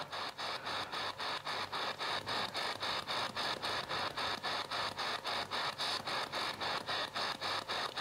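SB11 spirit box sweeping through radio stations: a steady, rapid chopping of static at about four or five pulses a second.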